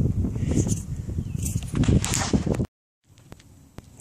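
Low rumble and rustle of wind and handling on a handheld camera's microphone, which cuts off suddenly about two-thirds of the way through, leaving a quiet stretch with a few faint clicks.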